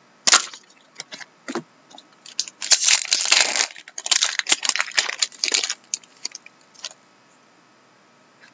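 Foil trading-card pack wrapper being torn open and crinkled by hand. A few sharp crackles come first, then two spells of dense crackling of about a second each, then scattered clicks.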